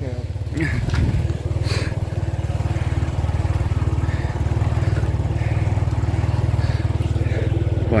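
Motor scooter engine running steadily while riding along, a low even drone.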